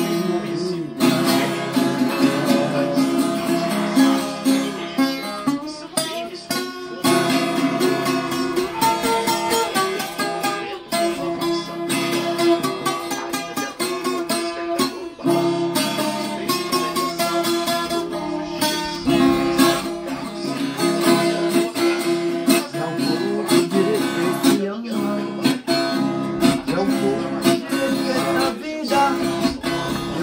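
Acoustic guitar strummed in a steady rhythm, chords ringing throughout with only brief breaks.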